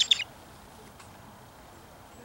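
A short burst of rapid, high chirping bird notes at the very start, then only faint outdoor background with a light tap about a second in.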